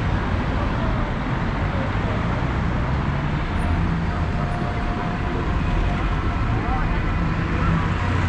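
City street traffic: cars driving past through a pedestrian crossing, a steady hum of engines and tyres, with people's voices mixed in.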